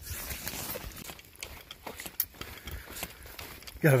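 Footsteps of a hiker walking a narrow, wet, overgrown trail, with rustling and irregular sharp knocks, the loudest about halfway through. A man starts talking near the end.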